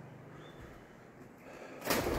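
Faint, quiet background inside an empty brick building, then near the end a sudden burst of noise from birds startled into flight.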